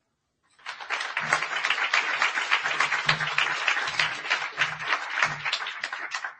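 Audience applauding, starting about half a second in and tapering off near the end.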